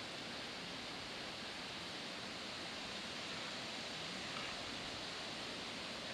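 Steady, even hiss of outdoor background noise, with no shots or voices.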